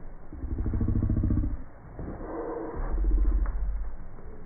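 Vibration motor of a pager-style dog-training collar buzzing in two bursts of about a second each, the second lower in pitch.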